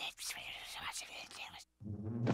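A cartoon character whispering into a handheld microphone: breathy, unvoiced speech that stops shortly before the end.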